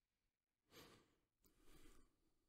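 Near silence: room tone, with a faint breath about a second in.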